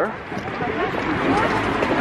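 Voices of a small group talking as they walk, over a steady hum of street noise.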